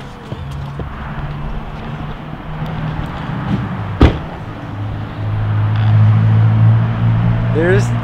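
A car door shuts with one sharp bang about four seconds in, over a steady low engine hum that grows louder in the second half.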